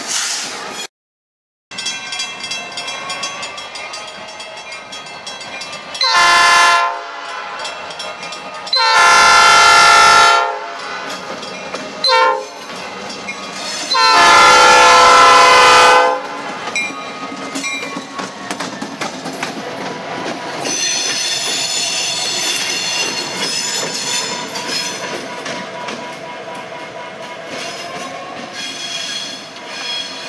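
EMD SD40E diesel locomotive sounding its multi-note air horn four times, long, long, short, long, the grade-crossing signal, as it comes through the crossing. This is followed by the locomotive rolling past, its engine running and its wheels clacking over the rail joints.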